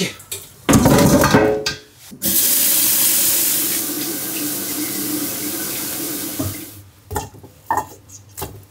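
Kitchen tap running over blanched pig trotters as they are rinsed by hand, a steady rush of water lasting about four seconds. It is preceded by a short loud burst about a second in, and a few knocks follow near the end.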